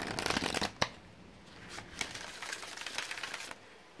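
A deck of tarot cards being shuffled by hand, in two spells of rapid clicking. The first spell fills the opening second and ends in a sharp snap. The second runs from about two to three and a half seconds in.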